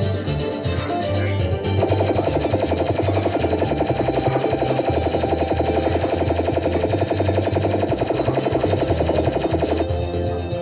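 Crazy Fruits fruit machine playing its electronic win music. About two seconds in it breaks into a fast, steady run of repeated notes while the credit meter counts up, and this stops just before the end.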